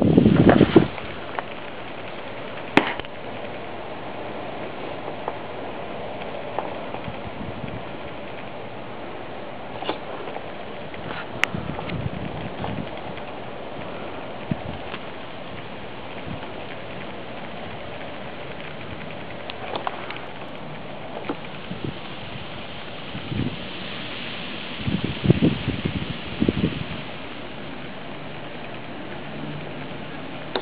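Homemade HHO electrolysis cell with stainless steel and aluminium electrodes running under power, a steady fizzing hiss of gas bubbling through the electrolyte with scattered crackles. A cluster of louder knocks and crackles comes about three quarters of the way through.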